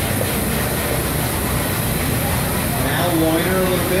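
Steady low rumble and hiss of background noise, with a voice starting to speak about three seconds in.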